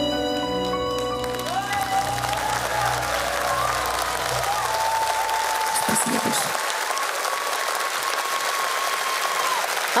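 The last held chord of the song's accompaniment dies away about a second in, and a studio audience breaks into steady applause, with some voices calling out over the clapping.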